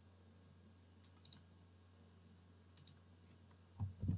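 Computer mouse clicks in the quiet: a quick pair about a second in and another pair near three seconds, over a faint steady hum. A louder low thump comes near the end.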